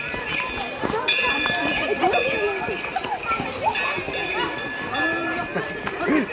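Crowd chatter as a line of people walks down a stony trail: many voices overlapping, with footsteps on the path and a faint steady high-pitched tone underneath.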